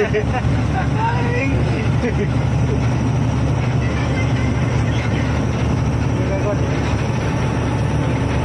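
Tata truck's diesel engine running steadily while driving, heard from inside the cab as a constant low drone.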